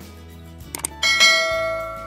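Two quick clicks, then a bright notification-bell chime of a subscribe-button sound effect about a second in, ringing and slowly fading.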